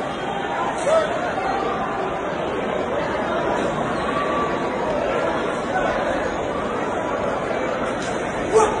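Steady background chatter of many people talking at once, echoing in a large hall.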